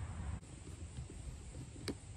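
Quiet handling of a plastic kayak paddle holder against the hull as it is lined up for screwing in, with one sharp click near the end as the screwdriver is set to the screw.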